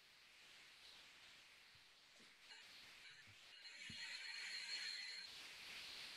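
Faint hiss with a thin, steady high whine coming through a video-call audio feed. It builds about halfway through and cuts off suddenly about a second before the end. This is stray background noise from one participant's computer, which others say sounds like being at an airport.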